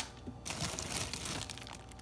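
Plastic bags of prepped vegetables crinkling softly as they are handled.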